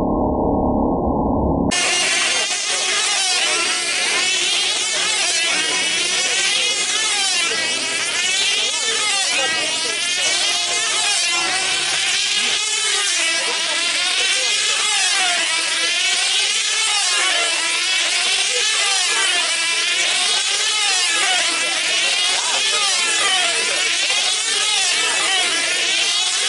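Several F2C team-race model aircraft with small high-revving diesel engines screaming as they circle on control lines, their pitch rising and falling every second or two as each plane passes. The first two seconds are muffled.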